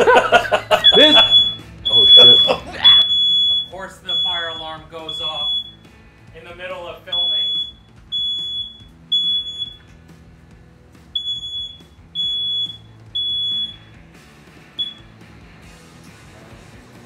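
Ceiling smoke alarm sounding: loud high-pitched beeps about one a second in groups of three with short pauses, ending with a short final beep near the end. It was set off by smoke from air fryers.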